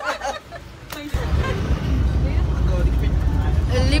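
Steady low rumble of a moving road vehicle heard from inside, starting abruptly about a second in.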